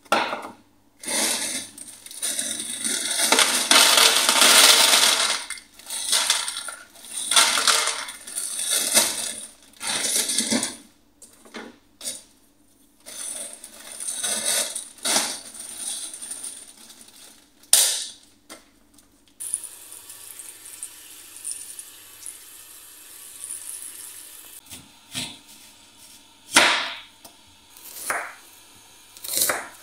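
Plastic bag of frozen mixed vegetables rustling and the hard frozen pieces clattering into a plastic tray, in irregular bursts through the first half. The second half is quieter, with a few sharp knocks near the end.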